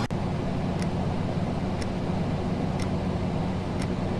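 Steady low electrical room hum, with a clock ticking faintly about once a second.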